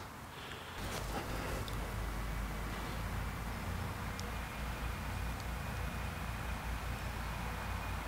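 Quiet outdoor ambience: a steady low rumble under a faint even hiss, with a few faint clicks.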